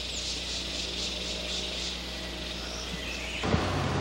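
Tropical forest ambience: insects chirping in a high, even rhythm of about four chirps a second over a steady hiss, cutting off about three and a half seconds in.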